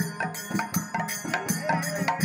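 Nam-sankirtan devotional music led by barrel drums that the dancers beat by hand in a fast, steady rhythm, about four strokes a second. Each stroke carries a high ringing over it.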